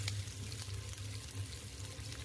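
Sliced shallots and garlic sizzling steadily in hot oil in a frying pan as they are stirred with a wooden spatula, with a low steady hum underneath.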